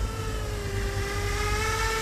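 Z-2 RC bicopter's two electric rotors hovering in a steady high whine that dips slightly in pitch about half a second in and then recovers. Low wind rumble on the microphone underneath.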